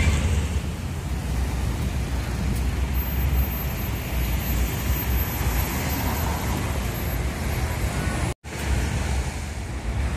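Low, steady engine rumble of a Mercedes-Benz OC 500 RF 2542 coach pulling in slowly, with road traffic noise around it.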